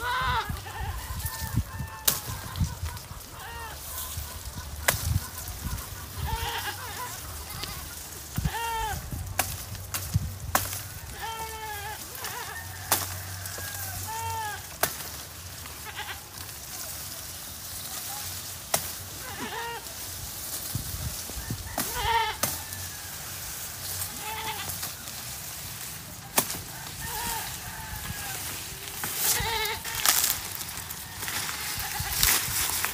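Goats bleating again and again in short calls, one every second or two, with sharp snaps every few seconds that are the loudest sounds.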